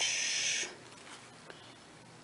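A short swish of swimsuit fabric and its card tag being handled, lasting about two-thirds of a second at the start, then low quiet.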